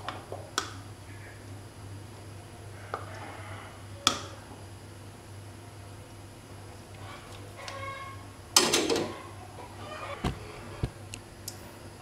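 Steel ladle clinking against an aluminium pot and a plastic strainer while hot drink is ladled into a glass mug: a few sharp clinks, with a louder clatter about two-thirds of the way through, over a low steady hum.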